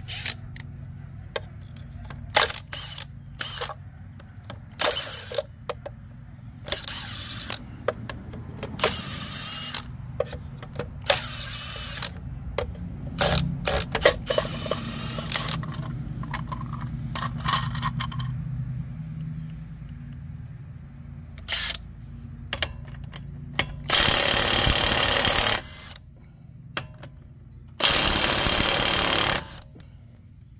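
Milwaukee cordless impact wrench driving lug nuts on a truck wheel: short bursts and metal clatter while the hubcap comes off, then two long bursts of hammering of about two seconds each, near the end.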